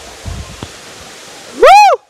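Steady rush of waterfall water, with a few low thumps of footfalls on the rocky path. Near the end comes a short, very loud call that rises and then falls in pitch.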